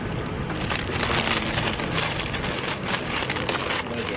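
Flaky chocolate almond croissant crust crackling as it is bitten and chewed: a rapid run of small crisp crackles starting about half a second in.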